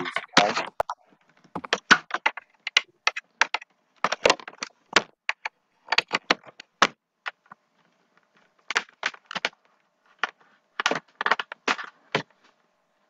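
Typing on a computer keyboard: irregular runs of quick key clicks with short pauses between them.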